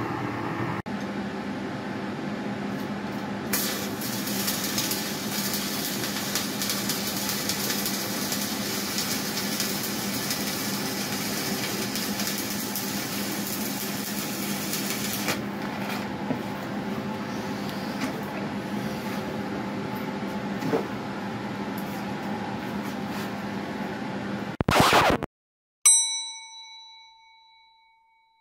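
Stick (MMA) welding arc crackling steadily on a penetrator weld being redone after a pinhole and lack of fusion were ground out, brightest in the middle stretch. Near the end a brief loud burst, then a single bell-like ding that rings and fades away.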